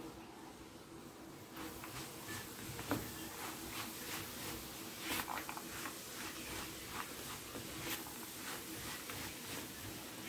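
Silicone spatula stirring sticky honey-coated nuts in a frying pan: irregular scrapes and soft clicks of nuts against the pan, starting about a second and a half in.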